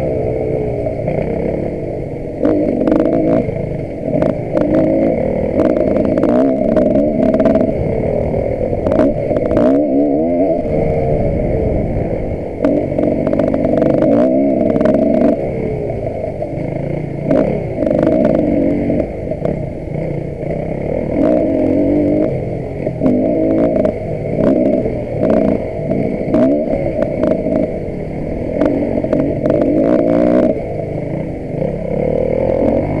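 On-board enduro motorcycle engine, revving up and down over and over as the throttle is worked on a rough trail, with frequent sharp knocks and clatter from the bike over the rough ground.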